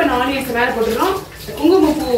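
Water running from a kitchen tap into the sink as utensils are rinsed under it, steady under a woman's talk.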